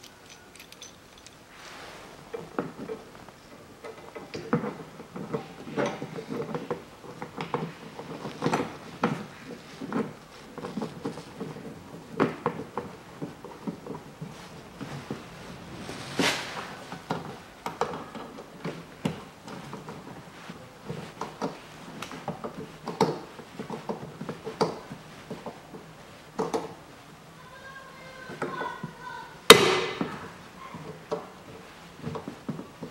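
Small metal clicks and taps as a screw-type wiper-arm puller is fitted and worked on a windscreen wiper arm's mounting stud, scattered irregularly. Near the end comes one much louder sharp crack.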